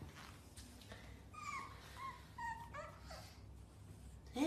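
Pug puppy whimpering: about four short, high whines in quick succession, starting about a second and a half in.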